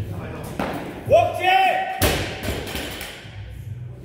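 Loaded barbell set down and dropped after a deadlift, landing on rubber gym mats with a heavy thud about two seconds in. A loud, held shout of about a second comes just before it.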